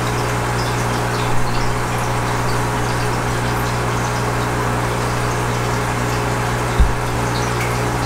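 Aquarium aeration running: air stones bubbling steadily in the tank over the constant low hum of the pump, with faint ticks of bubbles breaking. A short low knock comes near the end.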